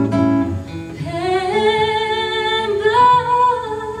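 A female voice sings a long wordless held note over acoustic guitar. The note slides up about a second in and steps higher near the end.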